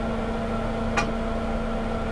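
Steady low hum with a few fixed tones, broken by a single short click about a second in.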